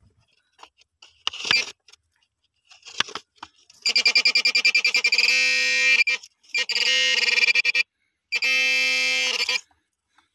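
Handheld pinpointer metal detector giving its alert as its tip is pushed into the soil: a fast pulsing electronic tone starts about four seconds in and turns into a steady held tone, cut off twice briefly, the sign that it is right over a metal target. A few light scrapes and knocks of the probe against the dirt come before it.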